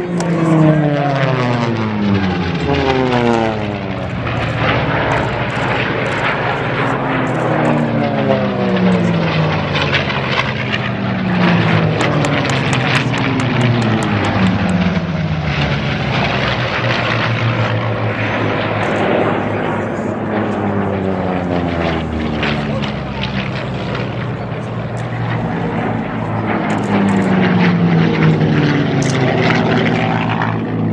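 Propeller-driven racing airplanes passing low and fast one after another. Each pass is a loud engine drone whose pitch falls as the plane goes by, and this repeats several times.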